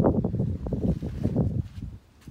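Wind buffeting the phone's microphone: a gusty low rumble that fades near the end.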